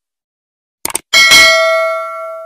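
Two quick mouse-click sound effects, then a bright bell chime struck twice close together that rings on and fades: the stock subscribe-and-notification-bell effect.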